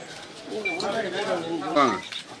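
Indistinct talk among a group of people, voices overlapping, rising from about half a second in.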